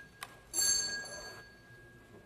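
A small high-pitched bell struck once about half a second in, ringing and fading away over about a second, just after a light click.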